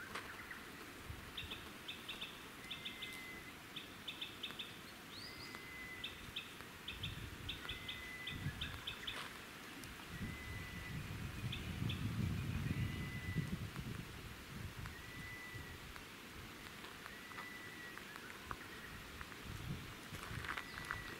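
Wild birds calling: one repeats a short, level whistled note about every two seconds, while another gives quick bursts of higher chirps, mostly in the first half. A low rumble swells up near the middle.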